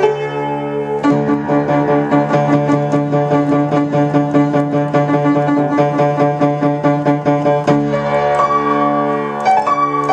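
Upright piano played four hands: steady repeated chords over held bass notes, the bass changing about a second in and again near the end.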